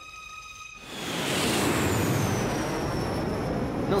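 Cartoon sound effect of a jet airliner flying past: engine noise swells up about a second in and holds, with a high whine slowly falling in pitch. A faint held musical chord dies away at the start.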